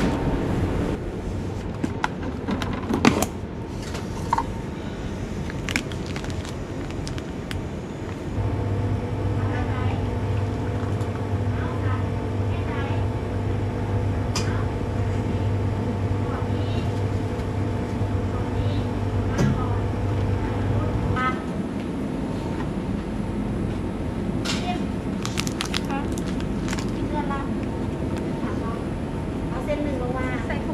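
Store coffee machine running with a steady hum, starting about eight seconds in and cutting off about thirteen seconds later, as it dispenses a cup of coffee.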